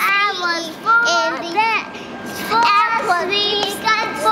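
Young girls singing a made-up chant-like song, "we gotta sleep in the airport", in short high-pitched phrases.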